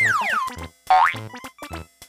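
Cartoon sound effects over children's music with a steady beat: a quick falling whistle-like glide at the start, then a short rising glide about a second in.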